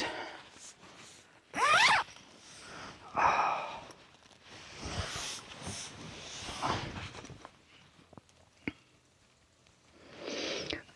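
Nylon hammock and its bug net rustling in short bursts as a person settles into the hammock, loudest about a second and a half in, then softer shifting, and a single sharp tick near the end.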